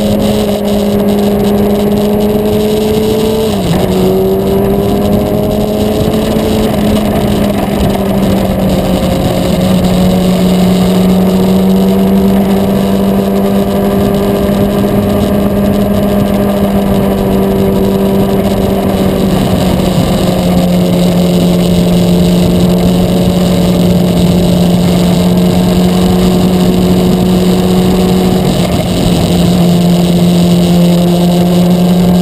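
Sport motorcycle engine heard from on board the moving bike, holding steady revs with the rush of wind around it; the engine note steps down in pitch a few times, about three and a half seconds in, around ten and twenty seconds, and again near the end.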